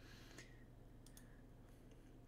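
A few faint computer mouse clicks, about half a second in and again just after a second, over a low steady electrical hum.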